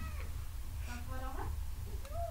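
A cat meowing once, a short rising-then-falling call about a second in, over a low steady hum.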